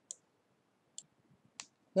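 Three faint short clicks, the first at the very start, then one about a second in and another about half a second later, with quiet between them.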